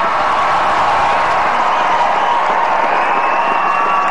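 Large crowd applauding and cheering, breaking out all at once and holding steady.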